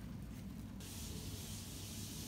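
Quiet room tone: a low steady hum, joined suddenly about a second in by an even, high-pitched hiss that carries on.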